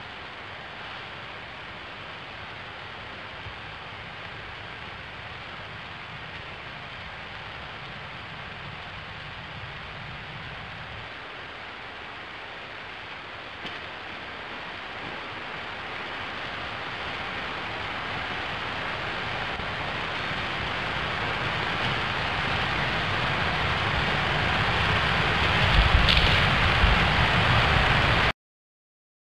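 Steady hiss-like static that grows gradually louder through the second half, with a low rumble joining near the end.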